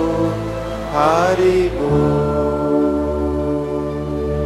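A man's voice chanting a devotional mantra over a steady musical drone. The sung line ends about two seconds in, leaving a held, sustained chord.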